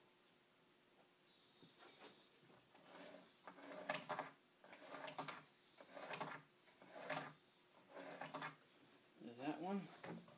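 Pencil scratching on rough-sawn wood in soft repeated strokes about once a second as a line is drawn along a level, with a brief murmur from a man's voice near the end.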